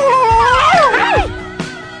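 High-pitched wailing, whimpering cries whose pitch slides up and down, ending in falling whines about a second in and then fading, over music.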